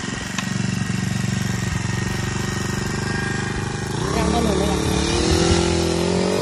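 Small two-stroke engine of a Hyundai HD 800 knapsack power sprayer running steadily just after starting, its pitch rising and settling higher about four seconds in as it is throttled up to drive the pump.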